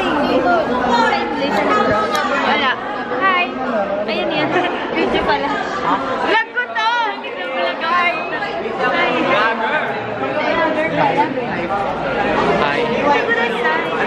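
Chatter of many students' voices talking over one another, with no single clear speaker.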